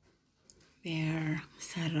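A short near-silent pause, then a person's voice speaking in two brief phrases during the last second or so.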